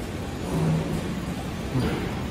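Steady low rumble of a busy indoor market hall, with a brief hummed voice about half a second in.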